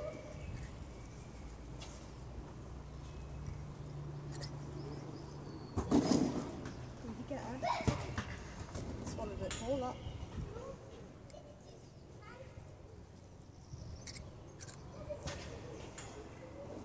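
Indistinct voices, loudest about six seconds in and again around eight to ten seconds, with scattered light clicks and rustles of handling close to the microphone.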